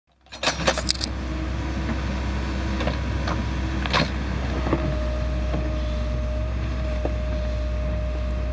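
Case 580L Turbo backhoe's diesel engine running steadily while it digs, a low drone carrying a whining tone that jumps higher in pitch about halfway through. Several sharp knocks of the digging gear come in the first half.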